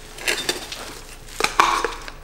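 Metal tin of body filler being handled and opened: a few sharp clicks, then louder knocks and a brief scraping ring of the metal lid coming off near the end.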